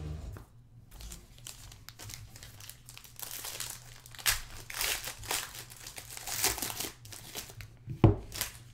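Foil wrapping of a trading-card pack crinkling and tearing as it is handled, in a quick irregular string of bursts that gets denser and louder after about three seconds.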